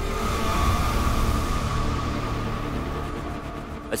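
Trailer sound design: a deep rumble and a rushing hiss under a held, ominous music tone. It swells in the first second and slowly fades away.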